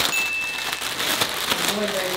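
White plastic mailer bag crinkling and tearing as it is pulled open by hand, an irregular run of crackles and rustles.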